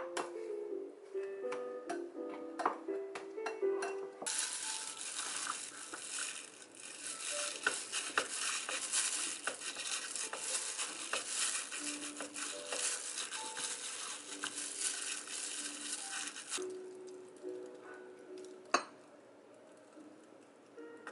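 Soft background music throughout. At first a rice paddle clicks lightly against a glass bowl as seasoned rice is mixed. Then, for about twelve seconds, a disposable plastic glove crinkles steadily as a hand presses the rice into a plastic triangle rice-ball mould, and there is one sharp tap near the end.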